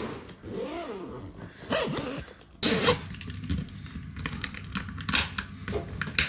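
Hard-shell suitcase being handled and zipped: an irregular string of short clicks and rattles that starts suddenly about two and a half seconds in.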